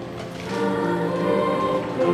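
Mixed high school choir singing sustained chords, swelling louder about half a second in.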